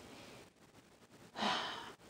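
A woman's single audible breath, a short sigh, about one and a half seconds in, after a near-silent pause.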